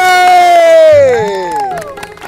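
A long shouted cheer: one voice holds a single loud note that slowly falls in pitch and drops away, with a second voice joining in a gliding call about a second in.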